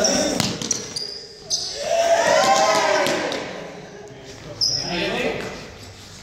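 Young people moving about a sports hall, their voices echoing, with a long shout about two seconds in. Sneakers squeak and feet thud on the hard floor.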